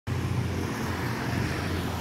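Steady street traffic noise: a low rumble of engines from passing motorcycles and other vehicles.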